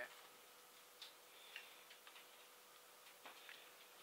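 Near silence: room tone with a faint steady hum and a few faint, irregular clicks.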